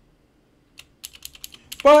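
Computer keyboard keys clicking in a quick run of keystrokes, starting about a second in.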